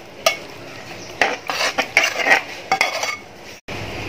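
Metal spoon stirring thick mango pickle in a metal pot, scraping and clinking against the pot's sides and bottom. There is a single clink near the start and a busy run of scrapes in the middle, and the sound cuts off abruptly just before the end.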